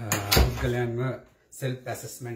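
A man talking close to the microphone, with one short, loud thump about a third of a second in.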